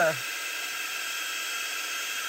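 Handheld craft heat gun running steadily, a high whine over an airy hiss, blowing hot air into a tin of wax to soften it where it has gone stiff and compacted in the cold.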